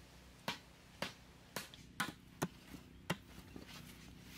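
Machete chopping into a wooden pole, about six sharp strikes roughly half a second apart, with a few lighter taps among them, cutting a notch in the wood.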